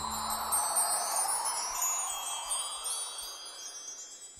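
A magical shimmer of chimes: many high tinkling tones over a soft airy swell, slowly fading away.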